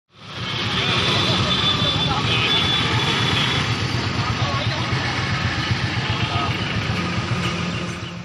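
Vehicle engine running close by, a steady low rumble, with indistinct voices of people talking over it.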